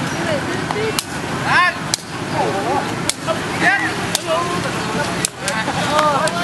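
Men's voices calling out over a steady hum of street traffic, with sharp taps about once a second.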